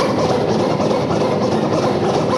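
A DJ's turntables putting out a dense, rough, choppy noise with no steady notes, part of a turntablist battle routine.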